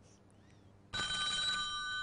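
Near silence, then about a second in an electronic telephone ring tone starts abruptly and holds steady as several fixed tones: an incoming call being put through to the studio, answered straight after.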